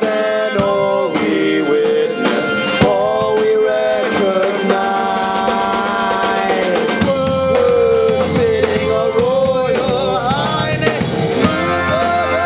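Live rock band playing, with drum kit and rimshots under a pitched melody line. About four seconds in, a fast, steady run of cymbal strokes starts, and a low bass line comes in around seven seconds.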